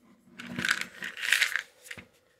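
Magnesium citrate tablets rattling inside a plastic supplement jar as it is turned in the hand: two rattling bursts, then a short knock near the end.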